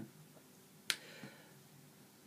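Quiet room tone with a single sharp click a little under a second in.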